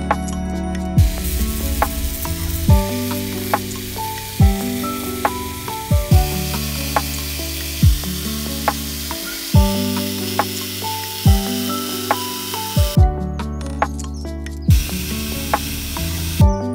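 Background music with a steady beat. Under it runs the high hiss of a small handheld rotary tool grinding plastic skeleton parts with a sanding bit. The hiss starts about a second in, breaks off for a moment near the end, and starts again.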